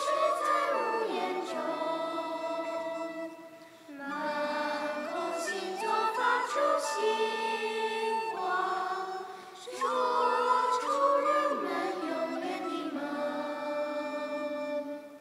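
A small group of women singing together in harmony, in long sung phrases with short breaks between them about four and ten seconds in.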